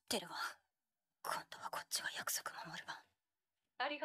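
Japanese anime dialogue: a character speaking in two short phrases, the second longer, with a brief pause between.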